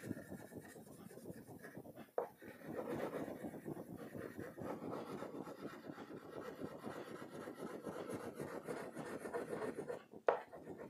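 Orange wax crayon rubbing on a paper sheet in quick short strokes, all in the same direction: a faint, steady scratchy rasp. It is lighter for the first two seconds, with a small tick about two seconds in, then runs on more steadily.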